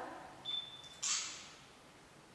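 A short, steady, high-pitched electronic beep lasting about half a second, followed about a second in by a brief hissing burst that fades quickly.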